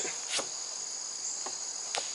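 Steady high-pitched insect chorus trilling without a break, with a few faint clicks.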